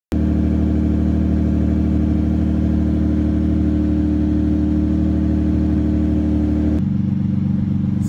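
Toyota Supra's naturally aspirated 2JZ straight-six idling steadily through an aftermarket HKS exhaust, just after a start following a long lay-up. The tone changes abruptly near the end.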